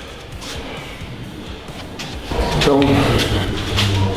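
A man's voice, speaking over a faint background music bed, starting about two seconds in; before that only the quieter music and room sound.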